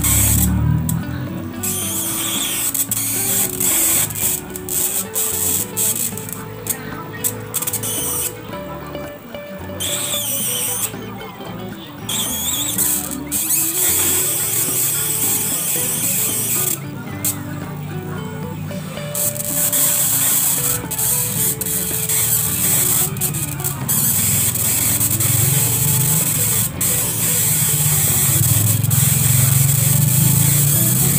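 High-voltage arcing at a CRT picture-tube socket: the focus lead on the green cathode pin hissing and crackling almost without pause, cutting out for a second or two several times. This is the tube being 'shot' to revive a dead green cathode.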